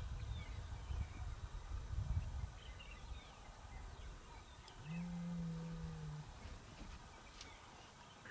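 A single low, drawn-out animal call, steady in pitch and about a second and a half long, comes about five seconds in. Before it, a low rumbling noise is loudest in the first two seconds, with a few faint chirps above.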